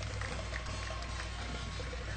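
Faint, steady stadium background noise during a football kickoff, over a low electrical hum, with a faint held tone through the middle.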